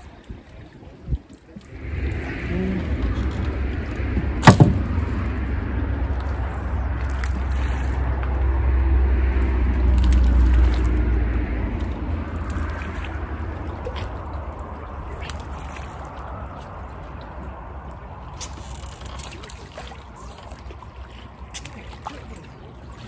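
Water sloshing and lapping, under a low rumble that swells for about ten seconds and then slowly fades. One sharp click about four and a half seconds in.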